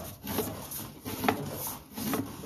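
Rubbing and scraping handling noise from the recording device's microphone brushing against a surface, with a sharper knock a little over a second in.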